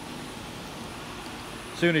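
Steady, even whoosh of electric fans running beside an ozone generator, with a faint steady high-pitched tone over it.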